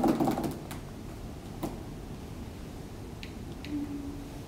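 Plastic clicks and rattles from a Doona car seat stroller's fold-out canopy being worked by hand, loudest right at the start, with a few single sharp clicks after.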